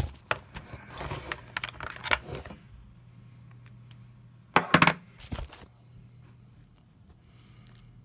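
Close handling noise of small hard objects and packing material: a run of small clicks and rustles for the first couple of seconds, then a few sharp clicks a little after the middle, followed by a faint steady hum.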